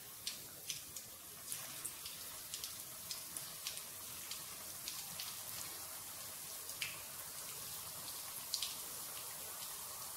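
Green gram pakoda patties frying in hot oil in a pan: a quiet, steady sizzle with scattered sharp crackles and pops.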